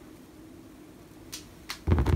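Quiet room, then two light clicks about a second and a half in as small twisted copper wire pieces are handled and set down.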